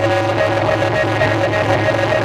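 Chầu văn ritual music, led by a plucked-lute melody of held notes stepping up and down over a steady low accompaniment.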